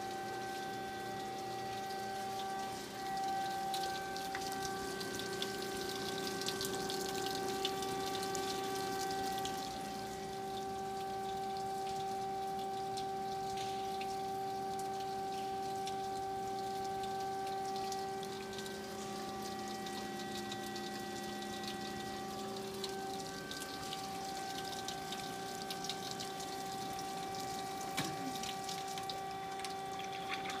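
DoAll horizontal band saw running, a steady hum of several held tones over a crackling hiss. A couple of light clicks come near the end.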